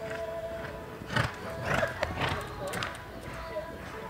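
A loping horse's hoofbeats on arena dirt, with a run of loud, sharp strikes between about one and three seconds in, over steady background music.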